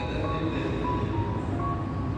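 Slow hymn melody of held notes stepping from pitch to pitch, over a steady low rumble.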